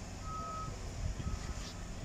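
Vehicle reversing alarm beeping: a single high-pitched tone repeating roughly once a second, two beeps here, faint over a low background rumble.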